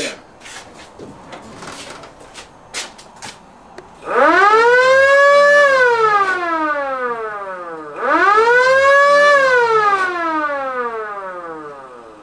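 Siren on a 1946 Plymouth, sounded twice: each time it climbs in pitch for about a second and a half, then falls away slowly over a couple of seconds. A few faint clicks come before the first wail.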